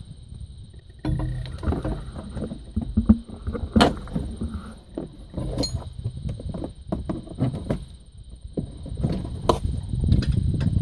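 Irregular knocks, clicks and rattles of hands working stiff control cables down through a hole in a tractor cab's floor, over a low rumble that starts about a second in.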